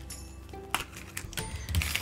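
Quiet background music under a few sharp plastic clicks and creaks as a plastic toy capsule ball is twisted open.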